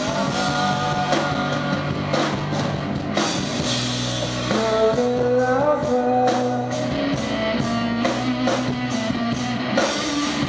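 Rock band playing live: amplified electric guitar, keyboard and drum kit, with a singing voice at times. The drum beat stands out as regular strikes in the second half.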